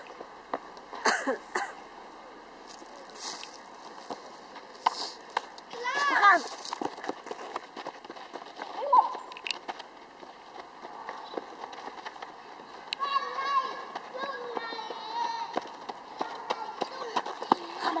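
Children's voices calling and shouting during a game of football, with a few sharp knocks of the ball being kicked. The loudest is a high shout about six seconds in.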